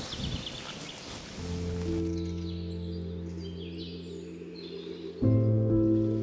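Wind and leaf rustle for about the first second and a half, then soft background music of long held chords comes in, moving to a new chord near the end.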